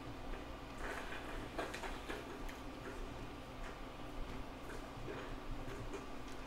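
Faint, scattered light clicks and taps of fingers handling a DJI Phantom 4 drone's plastic body and the plastic cover of its SafeAir parachute unit, over a low steady hum.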